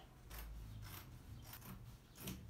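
Scissors cutting through fabric in a run of faint, quick snips, a few a second.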